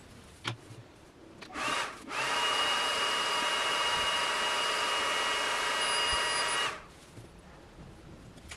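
xTool laser engraver running while it engraves a wooden plaque: a brief burst, then a steady whirring hiss with a constant high whine for about four and a half seconds that cuts off suddenly. A light knock comes just before it.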